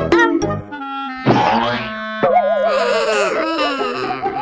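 Cartoon sound effects over music: a swish about a second in, then a wobbling, warbling tone with falling slides, a dizzy effect for a dazed character.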